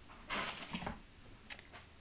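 Hands handling rubber-stamping supplies on a tabletop: a short rustle and scrape about half a second in, then a single light click about a second and a half in, as a clear stamp case or acrylic block is picked up.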